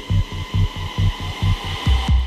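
Dark psytrance from a DJ mix. A low kick and bassline pulse at about four hits a second under a steady hissing synth wash and held high tones, with the hi-hats dropped out.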